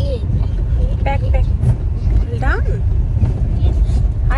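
Low, steady road rumble inside the cabin of a moving car, with a few brief snatches of voices.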